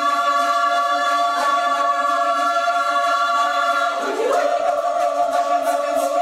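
Women's choir singing Georgian song in sustained chords, the voices sliding up into a new chord about four seconds in.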